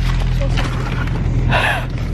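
A steady low drone, with one short loud burst of voice, a gasp or laugh, about a second and a half in.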